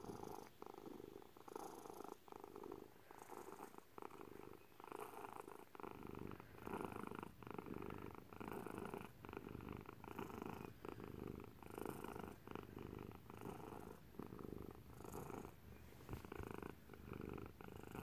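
A domestic cat purring quietly close up, the purr pulsing regularly with each breath and growing deeper and fuller about six seconds in.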